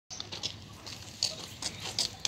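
Mongooses giving a series of short, high-pitched chirps at irregular intervals.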